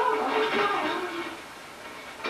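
A person's long drawn-out vocal cry of "ah", wavering and sliding slowly down in pitch, then fading out about a second and a half in.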